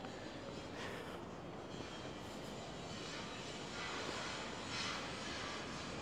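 Steady city street background noise: a low rumble of traffic, with no distinct events.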